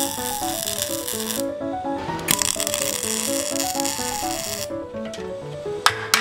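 Background music with a stepped, bouncing melody, over which a MIG welder's arc crackles and hisses in two runs of about one and a half and two and a half seconds. Sharp taps, a hammer chipping at the weld, come in near the end.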